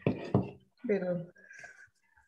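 A sharp knock about a third of a second in, among short stretches of speech, as a cup and a bowl of arepa dough are handled on a counter.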